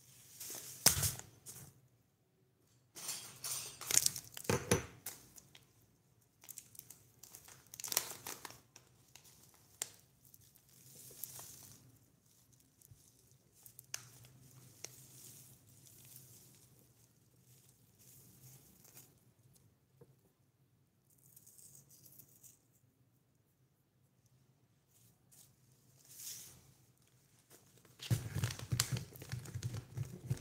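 Crinkling and rustling of something being handled and torn, in irregular bursts with quiet gaps between. A denser, steadier stretch of rustling begins near the end.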